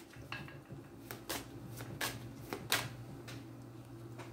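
Tarot deck being shuffled by hand: a string of short, irregular card swishes and taps, about eight in all, over a faint steady low hum.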